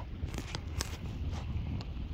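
Wind buffeting the microphone with a steady low rumble, and a few light splashes of lake water against a kayak.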